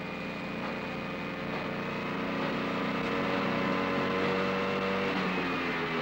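Motor of a rail-sleeper screw-driving machine running steadily as it screws down track fastenings. It grows a little louder over the first few seconds, and its pitch sags slightly near the end.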